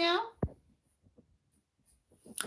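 A woman's voice finishing a phrase, then one short low thump about half a second in, followed by near silence with a few faint ticks.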